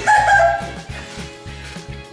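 Background music with a steady beat, and at the very start a short, loud, high-pitched cry, falling slightly in pitch and lasting about half a second.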